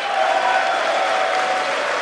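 A large audience applauding: dense, steady clapping from many hands at once.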